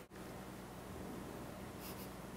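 Faint, steady soft rustling of a hand stroking and rubbing a long-haired cat's fur.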